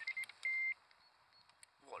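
Electronic carp bite alarm sounding a fast run of short beeps and then a brief unbroken tone, signalling a take as a fish pulls line off the rod.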